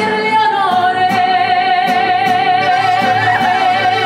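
Woman singing a Mexican corrido live, holding one long note with vibrato, accompanied by button accordion and acoustic guitar.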